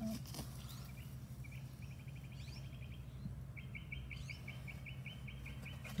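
A bird's rapid trill of high, evenly spaced chirps, twice: a short run about a second and a half in, then a longer one from about three and a half seconds on, over a steady low hum.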